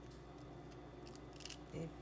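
Faint clicks of a knife cutting through the shell of a raw whole shrimp, about a second and a half in.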